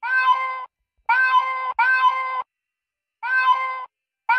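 Cat-meow ringtone of a joke 'cat calling' incoming-call screen: a recorded cat meowing four times, each meow about two-thirds of a second long, the second and third close together.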